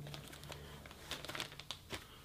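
Faint handling sounds: a few small clicks and rustles as a Nikon SB800 speedlight is pushed into the stretchy fabric pocket of a collapsible flash disc diffuser.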